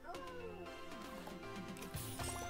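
Online video slot game audio: steady background music with cartoon sound effects as the grid clears and new symbols drop in. Several sliding pitch glides come in the first second.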